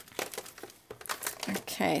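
Clear plastic packaging bag crinkling as it is handled, in short irregular crackles, mostly in the first half second.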